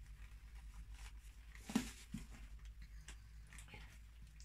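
Faint wet squishing and rustling of gloved hands pressing and smoothing resin-soaked fabric (Acrylic One) over a mould on plastic sheeting, with a sharper tap a little under two seconds in, over a low steady hum.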